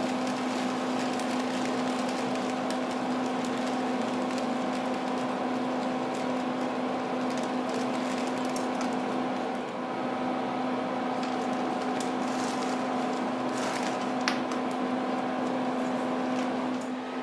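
Wheat kernels trickling from a plastic bag into a plastic weighing dish on a lab balance, a continuous grainy rattle with a few sharper ticks later on. Under it runs a steady hum of lab equipment.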